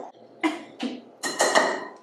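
Yogurt being spooned out of a measuring cup into a glass mixing bowl, with utensils knocking and scraping against the dishes. There are three short sounds, the last a little longer.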